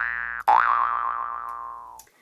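Electronic 'boing' sound effect: springy tones that slide upward. One swoop ends just after the start; a last one about half a second in slides up, drops back and fades out over about a second and a half.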